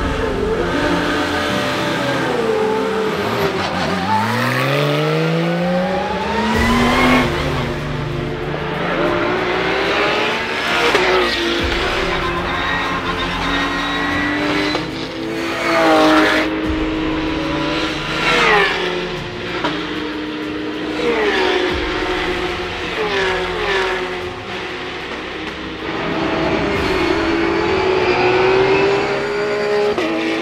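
Porsche 911 GT3 Cup race cars' flat-six engines running loud at racing speed, revving up through the gears with repeated rises and sudden drops in pitch at each shift.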